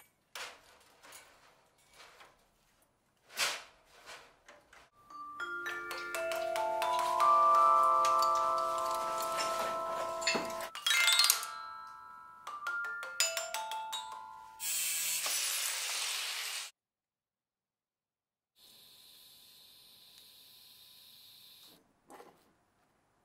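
Vibraphone bars of the Marble Machine X struck in a run, notes stepping up and then back down and ringing on, with knocks of the mechanism being handled before them. Then an angle grinder cuts steel for about two seconds, and near the end a quieter steady hiss.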